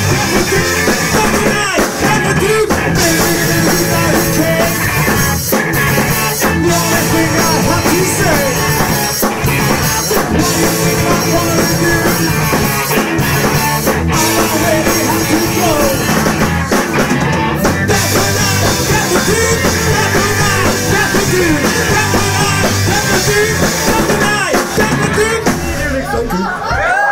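Live rock band playing loud: electric guitars, bass and drum kit, with a vocalist singing over them.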